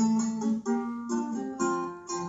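Acoustic guitar playing a run of plucked notes and chords, two or three a second, each ringing and fading, heard through a TV speaker and recorded on a phone.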